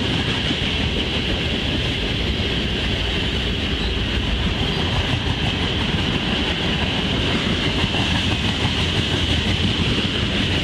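Freight train cars, boxcars and reefers, rolling past close by: a steady rumble of steel wheels on the rails with some clickety-clack. A steady high hiss runs over it.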